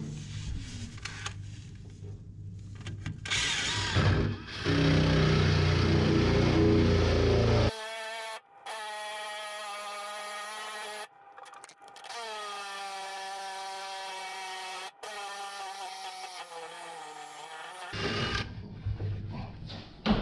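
Cordless drill boring an angled hole down through the bathroom floor, guided by a wooden jig block. First comes a loud, rough cutting noise for a few seconds, then a steady motor whine that drops in pitch as the bit loads up. The whine cuts out and restarts abruptly several times.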